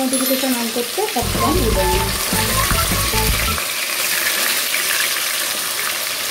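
Small nyados fish sizzling steadily as they fry in hot mustard oil in a kadai. A low rumble joins in for a couple of seconds from about a second in.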